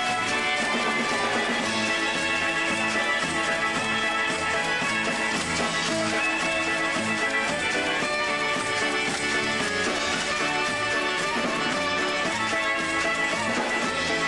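Live polka band playing a polka medley: horns, saxophone and accordion over a steady bass beat.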